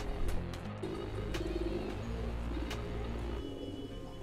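Domestic pigeons cooing: low, warbling calls.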